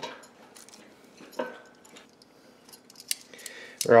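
Sparse light clicks and clinks of a utensil against a glass bowl and an air fryer basket as seasoned raw chicken wings are moved across a few pieces at a time.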